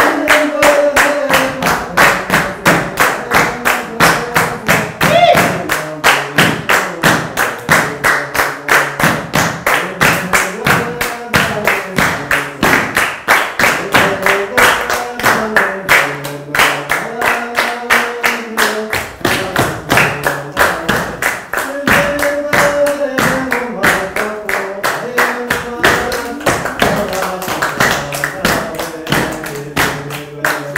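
Hands clapping a steady, even beat with voices singing a chanted melody for a Rwandan traditional dance (imbyino nyarwanda).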